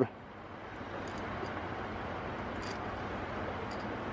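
Steady soft outdoor hiss of background noise, swelling slightly in the first second, with a few faint clicks.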